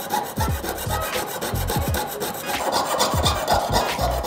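Jeweller's piercing saw cutting out a small pendant at a workbench, in quick repeated back-and-forth strokes.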